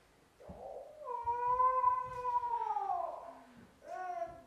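A performer's long wailing cry, held for about three seconds from about half a second in, sliding down in pitch near the end.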